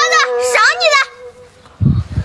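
A young girl speaking in a high voice for about a second, then a quieter stretch, with low thuds beginning near the end.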